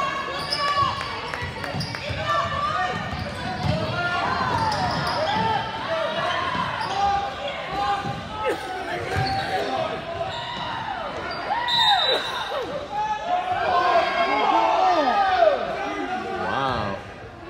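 Basketball game on a hardwood gym floor: many short sneaker squeaks, the ball dribbling, and voices from the crowd and players throughout, with a short high whistle about twelve seconds in, before the players line up for a free throw.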